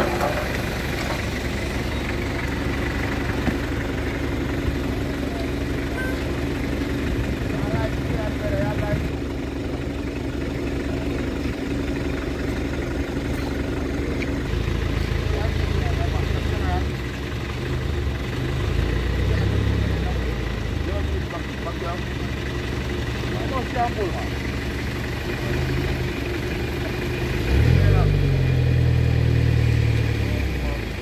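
A vehicle engine idling steadily under indistinct voices of people talking nearby, with a louder low rumble near the end.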